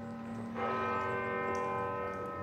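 A church bell struck once about half a second in, its tone ringing on steadily and beginning to fade near the end.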